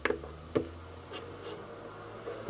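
Hands posing a small plastic action figure: light handling and rubbing noises, with a sharp click right at the start and another about half a second in as its joints are moved, then a few fainter ticks.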